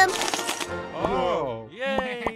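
Cartoon sound effect of a chocolate shell cracking and breaking off in a quick run of sharp crackles, then wordless voice-like sounds sliding down and back up in pitch.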